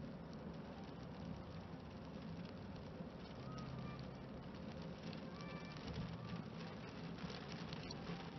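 Raindrops pattering on a car's windscreen and body over the steady low rumble of the car moving on a wet road, heard from inside the cabin. The drop hits grow more frequent in the second half.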